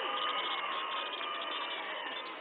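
Large crowd cheering and shouting, many voices overlapping, slowly dying down.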